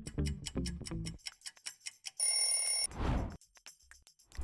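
Upbeat quiz background music that stops about a second in, then a short bright ringing alert tone as the countdown ends, followed by a whoosh as the screen changes to the next question.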